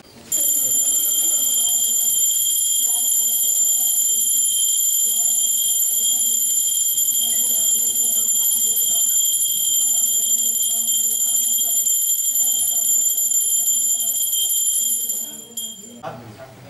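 Small brass hand bell (ghanta) rung without pause during the aarti, a loud steady high ringing that starts about half a second in and stops just before the end, with a man's voice underneath.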